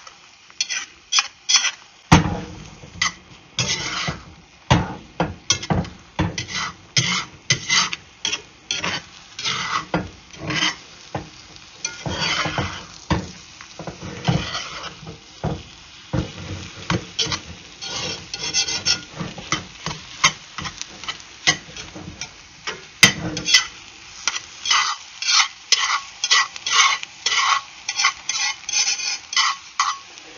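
Stainless steel spatula scraping and stirring scrambled eggs across the bottom of an 8-inch Lodge cast iron skillet, in repeated irregular strokes a few times a second, over a light sizzle of the eggs cooking in butter.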